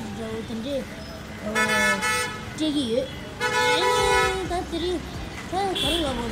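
A vehicle horn honking twice, each a steady blast of under a second, about two seconds apart, over a person talking.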